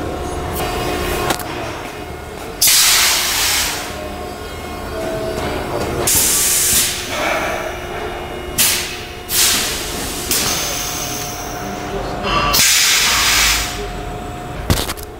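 Compressed air hissing out in about five sharp bursts, each around a second long, from the pneumatic actuators of dome valves being air-tested, with quieter workshop noise in between.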